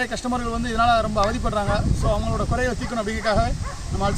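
A man's voice speaking steadily, with a low rumble of wind on the microphone underneath.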